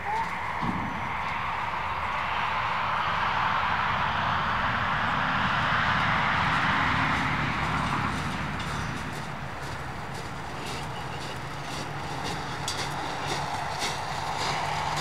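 Rushing noise of a passing vehicle, swelling to a peak about halfway through and fading away. Near the end there are light crunching steps on gravel.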